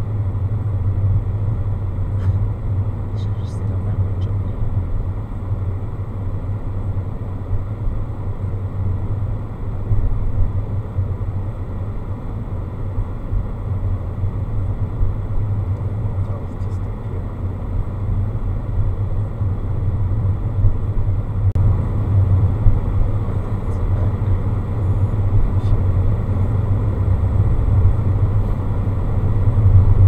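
Steady low rumble of a car's engine and tyres heard from inside the cabin while driving along a street, with the sound sitting mostly in the deep bass. It grows a little louder near the end.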